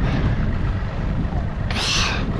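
A small boat's outboard motor running under way, with wind and water rushing past. A short loud hiss comes near the end.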